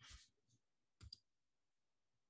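Near silence with a faint computer-mouse double click about a second in.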